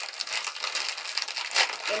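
Plastic packaging crinkling and rustling as a pack of paper cocktail umbrellas is handled and opened, with many quick small crackles.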